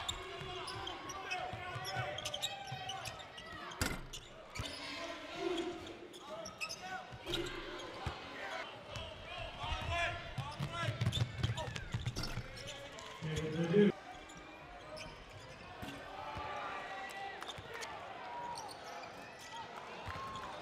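Basketball game sound in an arena: a ball bouncing on the hardwood court and short sharp knocks from play, over steady crowd voices. A brief louder pitched call stands out about two-thirds of the way through.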